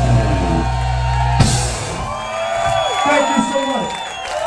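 Live rock band ending a song on a sustained chord that is cut off by a final drum and cymbal hit about a second and a half in, then the crowd cheering and whooping.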